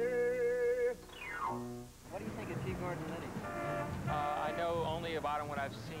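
A man sings a long held note with vibrato over piano accompaniment. The note ends about a second in and is followed by a falling glide in pitch. From about two seconds in come street sounds with people talking.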